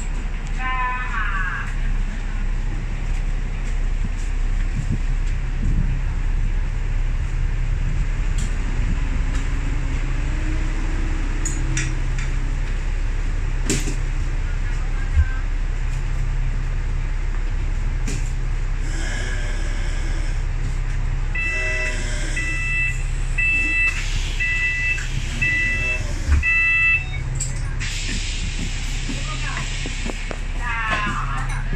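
A bus's exit door cycle over the steady hum of its idling engine: about five seconds of evenly spaced two-tone warning beeps as the door closes, ending in a loud knock as it shuts, followed a little later by a burst of air hiss.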